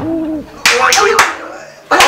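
A person's voice making short wordless sounds: a brief held hum-like tone, then a louder vocal outburst about a third of the way in, fading before the end.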